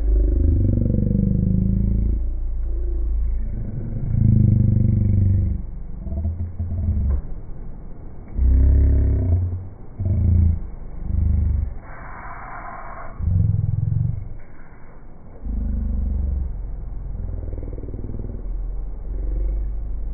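Wind buffeting the phone's microphone: a low rumble that surges and fades in irregular gusts.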